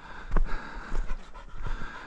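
German shorthaired pointer panting hard, with footsteps on a dry dirt track about every two-thirds of a second.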